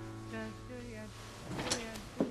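Soft piano or keyboard music, held notes over a low sustained tone, fading away. Near the end there is rustling and a couple of short knocks.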